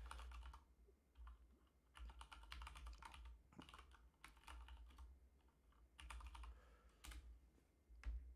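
Faint typing on a computer keyboard, in several short bursts of keystrokes.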